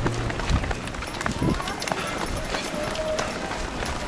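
Footfalls of many runners on an asphalt road, a scattered patter of short steps heard from within the pack, with faint voices behind.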